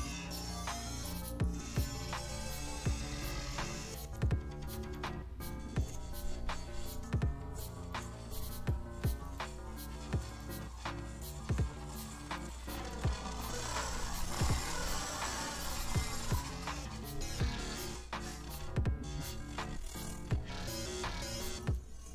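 An electronic dance track with a steady beat, heard only through the Pocket Dimension granulizer plugin from Freakshow Industries with its mix fully wet. The automated granular processing mangles the sound. A hissy swell rises in the highs around the middle.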